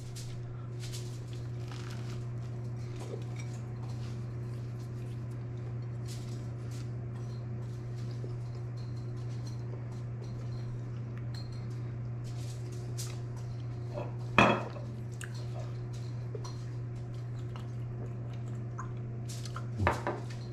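A person chewing a bite of toast: faint, irregular crisp crunches and mouth clicks over a steady low hum, with one louder short sound about fourteen seconds in.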